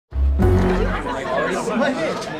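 A low, sustained chord of soundtrack music at the start, fading out as a crowd of people chatter all at once.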